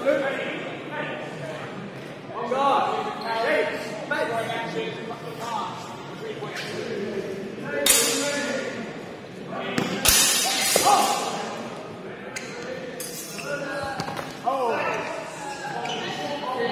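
Voices in a large, echoing sports hall, with two sharp clashes about eight and ten seconds in from steel longswords striking during a bout, the second ringing briefly.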